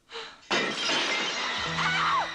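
A door's glass window shattering as an arm smashes through it, a sudden loud crash about half a second in. A woman screams near the end as horror score comes in underneath.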